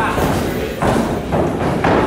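Boxing gloves landing punches in sparring: about four dull thuds within two seconds.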